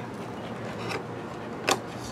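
Steady low background hum with a single sharp click near the end.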